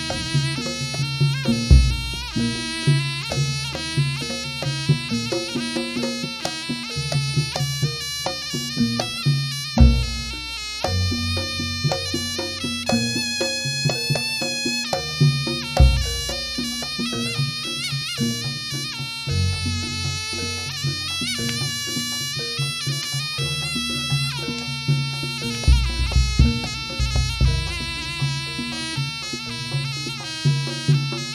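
Live Javanese barong-dance music: a reed pipe (slompret) plays a shrill, wavering melody over drums and other percussion. A few deep strokes sound at intervals of several seconds.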